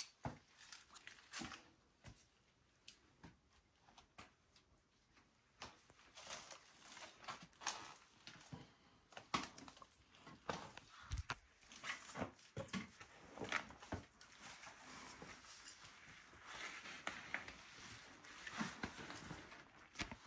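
Faint footsteps and scuffs on rock and loose stones, with scattered small knocks and clothing rustle, as people pick their way through a narrow cave passage. Sparse at first, the steps and knocks come more often from about six seconds in.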